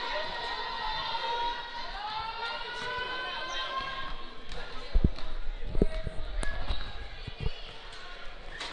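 A basketball dribbled on a gym floor: a few separate bounces in the second half, under voices in the gym.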